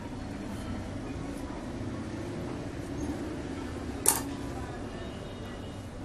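Steady background noise with faint distant voices, and one sharp click about four seconds in.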